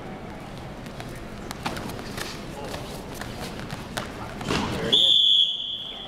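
Scattered thuds and scuffs of sparring fighters moving and striking on the mat. About five seconds in comes a single loud, steady high-pitched signal tone, held about half a second and then fading.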